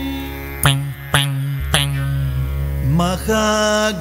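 Carnatic-style singing by a man over a steady drone: a held note, three sharp accents about half a second apart, then the voice sets off on a new sung phrase with sliding ornaments near the end.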